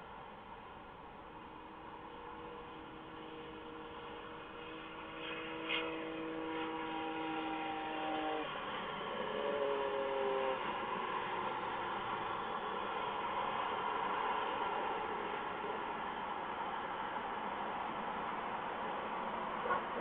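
A distant horn sounding a chord of several held tones for about seven seconds, followed by a shorter, lower pair of tones that falls in pitch, over a steady outdoor hiss.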